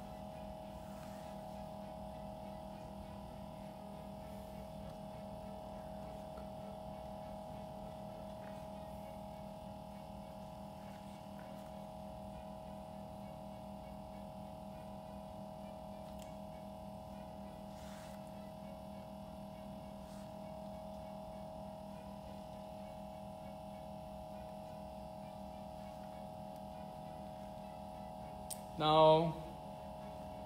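A liquid-nitrogen screen-separator freezer runs with a steady hum while its cold plate cools. A short, loud vocal sound comes near the end.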